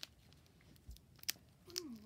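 Foil wrapper of a Pokémon booster pack crackling in a few sharp, scattered ticks as fingers pull at its sealed top to tear it open. A short hummed voice sound near the end.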